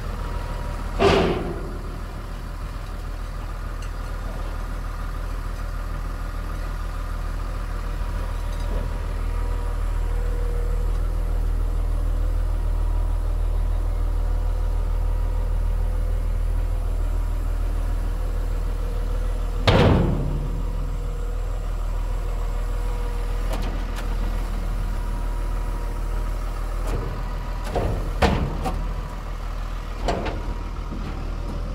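Iveco lorry's diesel engine running steadily at idle, a deep even rumble with a faint steady whine on top. Sharp knocks break in about a second in, around twenty seconds in, and twice near the end.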